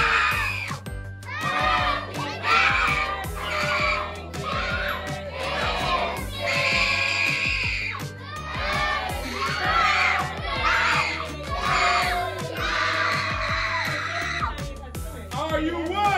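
A room full of adults and children singing and shouting loudly over music, with voices running on without a break and some notes held.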